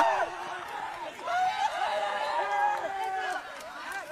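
Faint, distant shouting and chatter from several voices, with a few calls held for a moment: players and onlookers celebrating a goal.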